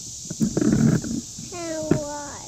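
A young child's voice: a brief noisy vocal burst, then a short steady-pitched vocal sound near the end, over a steady high hiss.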